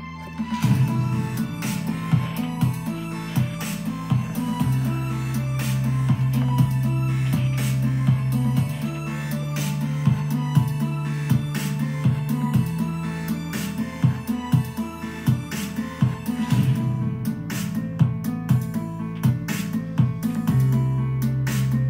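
Electronic music with a steady beat and sustained bass notes that change about every four seconds, played back through a homemade 60-watt stereo power amplifier and loudspeaker.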